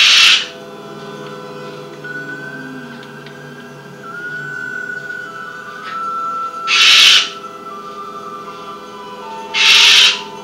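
Blue-and-gold macaw giving three loud, harsh squawks, at the start, about seven seconds in and near the end, over steady background music.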